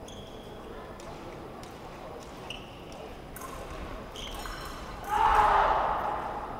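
Fencers' footwork on the piste, with shoe squeaks and stamps over a steady murmur of spectators. About five seconds in comes a loud burst of shouting that fades over about a second.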